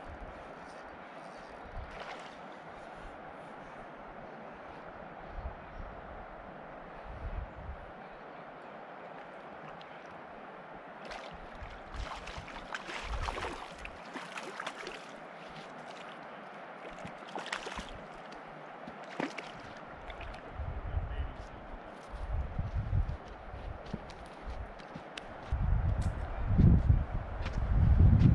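A hooked sucker splashing and thrashing at the surface as it is reeled in to the riverbank, heard as scattered sharp splashes over a steady background hiss. Heavier low thumps and handling noise take over in the last few seconds and are the loudest part.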